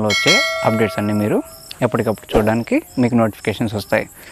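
A bright bell chime sound effect, like a notification ding, starts just after the beginning and rings for about a second and a half before fading. It plays over a man talking, with crickets chirping.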